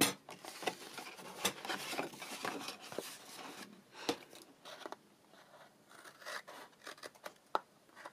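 Scissors snipping small wedges out of patterned paper, mixed with rustling as the sheet is handled. The snips and rustles come thick in the first half, then thin out to a few scattered clicks.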